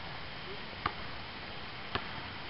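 Steady faint outdoor background noise with two faint clicks, one a little under a second in and one near the end.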